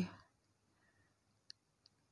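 Near silence with room tone, broken by one faint short click about one and a half seconds in.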